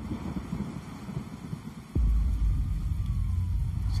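A deep, low rumble from a film trailer's soundtrack, quieter at first and then stepping up sharply about two seconds in.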